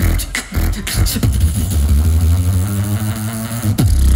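Live beatboxing through a handheld microphone and PA: a few sharp kick and snare sounds, then one long low bass note held for about two and a half seconds, with beats starting again near the end.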